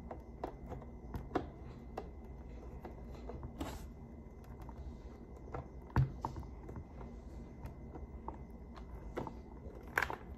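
A screwdriver tightening a visor-clip screw on a football helmet's facemask: irregular small clicks and scrapes, with a louder knock about six seconds in.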